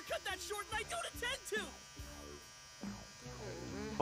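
Electric hair clippers buzzing faintly and steadily in the anime soundtrack, under a quick, high-pitched voice in the first second and a half.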